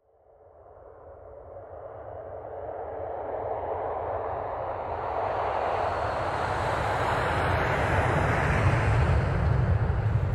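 Jet airliner engine noise, a steady rushing sound over a low rumble, swelling from near silence to loud over about ten seconds.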